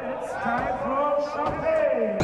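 Several people's voices talking and calling out over one another, with a short knock about one and a half seconds in.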